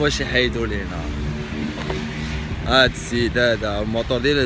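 Men's voices talking, at the start and again in the second half, over a steady low rumble.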